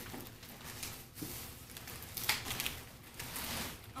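Rustling and scuffing of a large cardboard box and its packing being handled, in a series of short irregular bursts as it is reached into and tipped.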